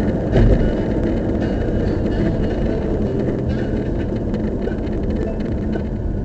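Car's road and engine noise heard from inside the cabin: a steady low rumble while driving on the expressway, with one louder thump about half a second in.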